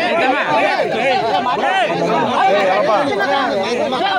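Several people talking loudly at once, their voices overlapping without a break: a heated argument between villagers and a minister over unkept promises.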